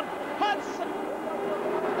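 Superbike engines of the racing pack, a steady high-revving drone heard through the TV broadcast's trackside sound. A brief shout from the commentator comes about half a second in.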